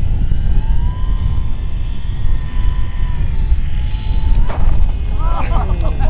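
RC model plane's motor whining at a steady pitch that sags slightly, then cuts off suddenly with a knock about four and a half seconds in as a plane hits the ground. Wind buffets the microphone throughout, and voices start near the end.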